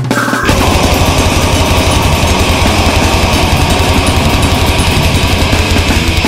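Brutal death metal played by a full band: heavily distorted guitars and bass over rapid, even kick-drum hits. The full band comes in hard about half a second in.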